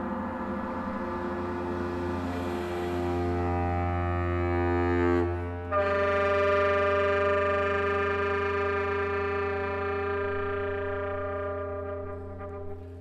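Symphony orchestra holding long, sustained chords over a steady low note, moving to a new chord about six seconds in, then thinning near the end.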